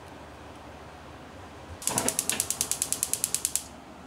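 Gas hob's electric igniter clicking rapidly, about a dozen clicks a second for nearly two seconds as the burner is turned on and lights. A low knock of the control knob comes just before the clicks start.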